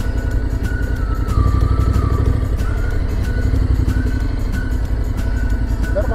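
Motorcycle engine idling with a quick, even low pulse, swelling slightly for about a second starting a second and a half in. Faint background music runs over it.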